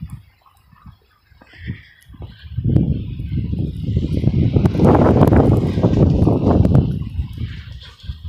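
Gusty wind buffeting the microphone: faint for the first two seconds, then a strong, ragged low rumble from about two and a half seconds in that eases off near the end.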